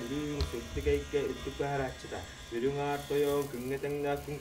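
A man's voice chanting a Sakha blessing verse (algys) in a low, buzzing, throaty tone. It moves in phrases of about a second, with a short pause near the middle.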